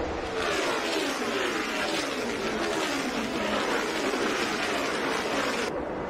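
NASCAR Cup stock cars' V8 engines at full throttle as several cars pass, their overlapping engine notes falling in pitch as they go by.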